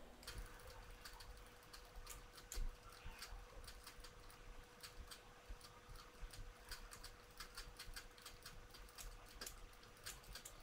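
Faint, irregular clicking of a computer mouse and keyboard at a desk, with one louder click about two and a half seconds in, over a faint steady hum.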